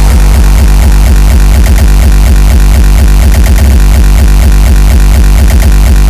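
Uptempo/terror hardcore electronic music: a fast, unbroken run of loud, distorted kick drums that comes in right at the start.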